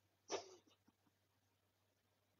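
A single brief cry, sharp at the onset and dropping slightly in pitch, about a third of a second in; otherwise near silence.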